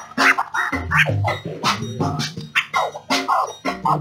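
A vinyl record is scratched back and forth by hand on a turntable, with quick mixer crossfader cuts chopping it into many short rising and falling glides. It plays over a backing beat with a bass line.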